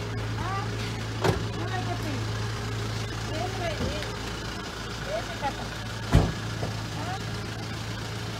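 Car engine idling steadily with a low hum, under soft voices, with two sharp knocks, one about a second in and a louder one near six seconds.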